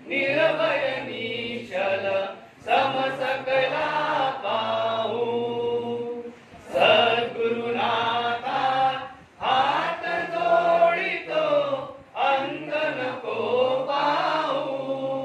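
Devotional chanting by a group of voices in unison, sung in phrases of a few seconds each with short pauses for breath between them.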